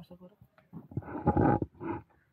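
A person imitating an animal's roar for a child, one loud rough roar about a second in and a shorter one near the end.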